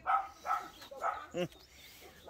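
A dog barking: four short barks in quick succession.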